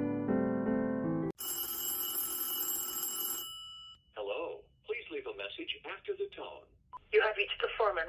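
Keyboard music stops abruptly about a second in and a telephone rings once, a sudden ring lasting about two seconds. A voice then speaks, thin and cut off at the top like speech heard over a phone line.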